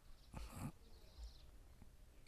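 Near silence: quiet outdoor background in a pause between sentences, with one faint short sound about half a second in.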